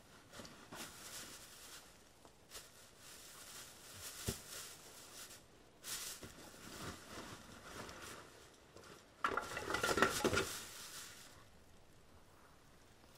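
Scattered rustling, knocking and light clattering as a man crouched on the forest floor handles things among dry leaves, louder and busier for about a second near the end.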